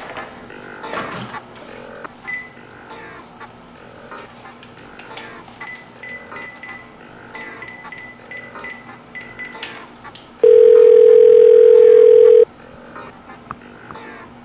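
Cordless telephone being dialled: faint short key beeps, then about ten seconds in a single loud steady ringback tone lasting about two seconds, the sign that the called line is ringing.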